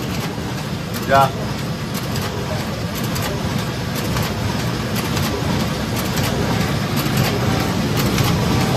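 High-speed production printer running at its full rated speed, feeding printed sheets out onto the output tray in a steady, even mechanical run with a fine rapid patter.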